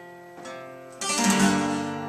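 Acoustic guitar being strummed in a live song accompaniment. A light strum comes about halfway in, then a much louder full strum about a second in, its chord ringing on.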